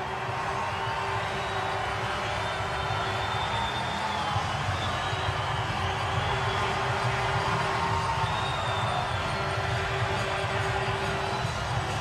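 Hockey arena crowd cheering and clapping in a steady roar, with music playing over the arena sound system, celebrating a goal.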